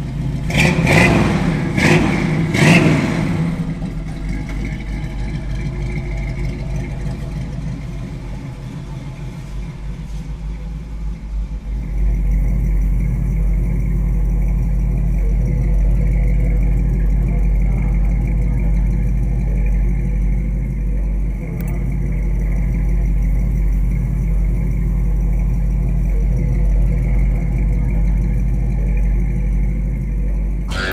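Chevrolet 327 small-block V8 revved in three quick blips in the first few seconds, then idling. About twelve seconds in, the sound changes to a deeper, steady low rumble.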